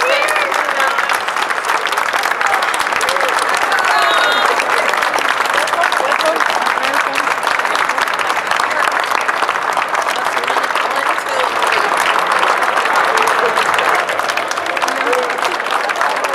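A crowd clapping continuously, a steady patter of many hands at an even level, with scattered voices over it.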